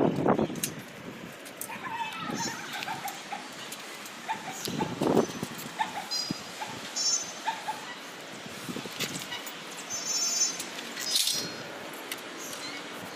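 Repeated short, high-pitched animal calls, scattered throughout, over background noise with a few clicks.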